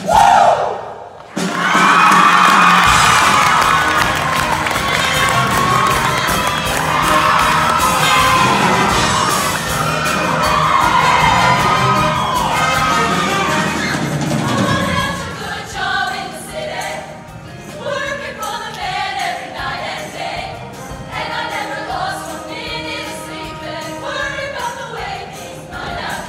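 Show choir and band cut off on a final note, then a large audience cheers and screams loudly for about twelve seconds. About fifteen seconds in the cheering fades under a new number, the band playing with women's voices singing.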